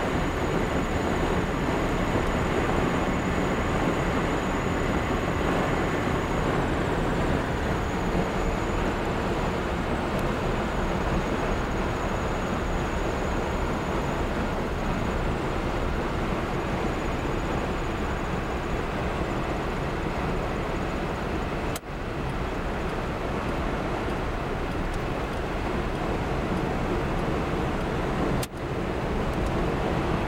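Steady engine and road noise of a car being driven, heard from inside the cabin, with a faint high whine through the first two-thirds. The sound cuts out abruptly for a moment twice, once about two-thirds of the way through and once near the end.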